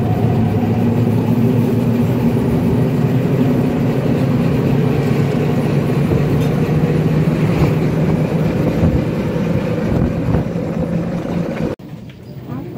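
Three-wheeler auto-rickshaw engine running steadily at cruising speed, heard from inside the rattly passenger cabin, with road noise. It cuts off suddenly near the end.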